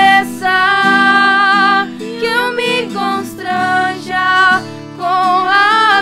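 Women singing a Christian worship song in long held notes, accompanied by a strummed acoustic guitar.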